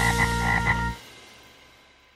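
Cartoon frog croaking in a few quick pulses over a held closing note, which cuts off about a second in and leaves a ringing tail that fades away.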